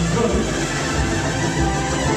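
A live salsa band playing a salsa number at a steady, even loudness.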